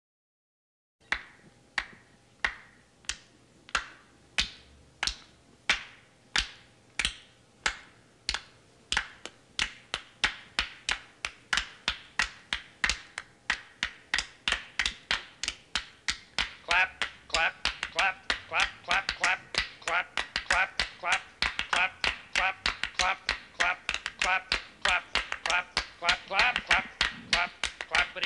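Sharp claps or snaps, one about every two-thirds of a second at first, multiplying into a dense, overlapping clatter as more layers of the same beat join in. From about halfway through, chirpy pitched sounds are mixed in.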